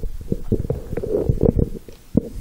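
Handling noise from a handheld microphone being taken off its stand: a dense run of dull thumps and rumbling rubs on the mic.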